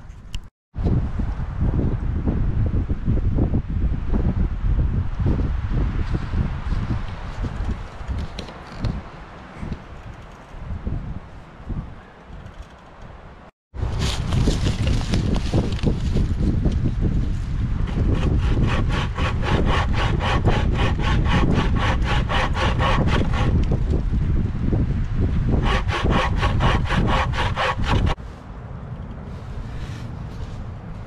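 Homemade hazel-framed bucksaw cutting through a fallen log: steady back-and-forth rasping strokes of the toothed blade through the wood, stopping shortly before the end. Before the sawing, about a dozen seconds of rustling noise.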